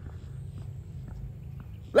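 A pause in a man's speech filled with a low, steady rumble of wind on the microphone and a few faint ticks; his voice starts again right at the end.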